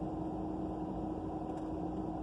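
Steady low rumble with a constant hum inside a parked car's cabin, the car's running hum with no change through the pause.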